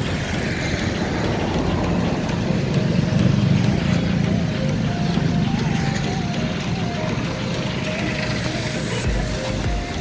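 A steady low engine rumble, with faint, wavering distant voices above it.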